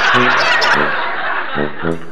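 Laughter over background music with a steady bass pulse, then a short spoken "Ho?" near the end.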